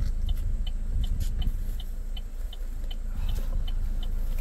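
A car engine idling as a steady low rumble, with short high pips repeating about three times a second.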